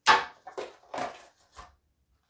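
A metal collector's tin and its plastic card insert being handled: a sharp clack at the start, then a few lighter knocks and rustles.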